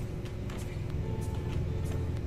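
Computer keyboard typing: a series of separate key clicks as a short name is typed, over a steady low rumble.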